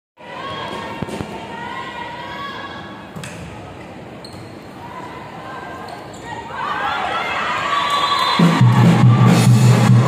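Volleyball rally in an indoor arena: a few sharp ball hits over crowd chatter and chanting, then the crowd swells into cheering as the point ends. Loud pulsing arena music with a heavy bass starts about eight and a half seconds in.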